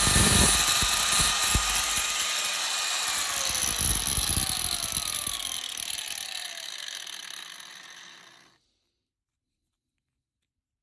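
Angle grinder with a diamond cutting disc working a slot into an aluminium shim, running loud with a high whine. Its pitch then slowly falls and the sound fades as it winds down, until it cuts off abruptly about eight and a half seconds in.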